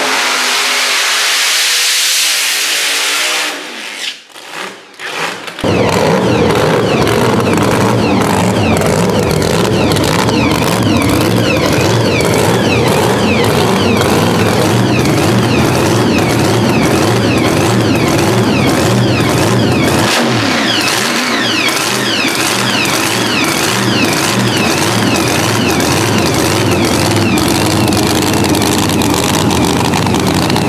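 Supercharged Pro Mod drag car engine. It opens with a loud rush of noise for about three seconds that drops away. Then, from about six seconds in, the engine runs steadily and loudly with a fast, even pulse that continues to the end.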